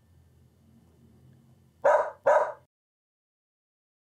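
A stock dog-bark sound effect: two barks about half a second apart, about two seconds in, after faint room tone.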